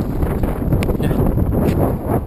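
Wind buffeting the microphone in a loud, steady rumble, with a couple of short clicks from gear being handled.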